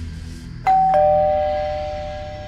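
Doorbell chime going ding-dong: two notes, the second lower, each ringing on and slowly fading.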